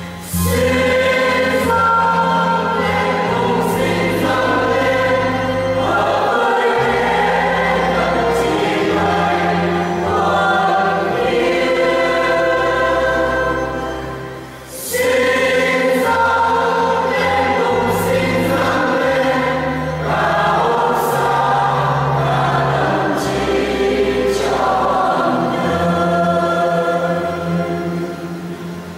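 A choir singing a Vietnamese Catholic hymn over held bass notes of accompaniment, with a brief dip between phrases about halfway through.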